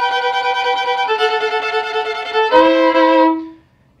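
Violin bowing slow, sustained double stops, two notes sounded together, beginning on B with G over a G chord. The pair changes about a second in and again about two and a half seconds in, then the playing stops shortly before the end.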